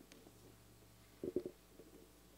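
Quiet room tone in a church with a faint steady low hum. A little past a second in come two or three soft knocks from people moving in the wooden pews.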